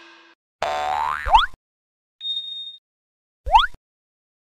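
Short cartoon sound effects: a brief sound ending in a quick upward slide about a second in, a high steady beep about two seconds in, and another quick upward slide near the end. The song's last note fades out just before them.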